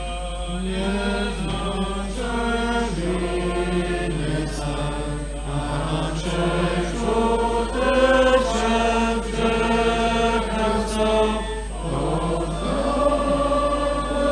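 A group of people singing a hymn together, slowly, each note held for about half a second to a second.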